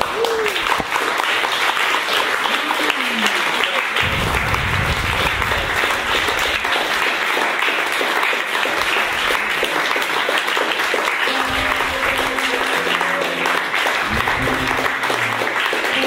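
Audience applause breaks out suddenly and keeps up steadily.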